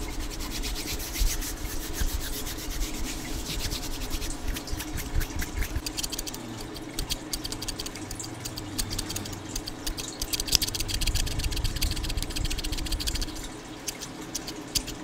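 Hands rubbing and brushing close to a microphone, then small scissors worked against the mic, a rapid, dense run of fine ticks and scrapes.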